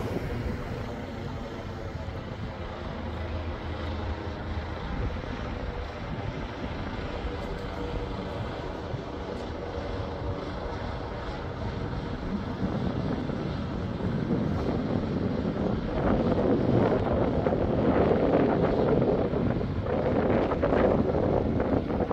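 Helicopter flying overhead, its engine and rotor noise steady at first and growing louder over the last several seconds.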